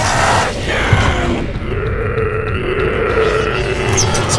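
A person growling like a zombie: a short harsh, breathy snarl at the start, then one long, wavering, guttural growl.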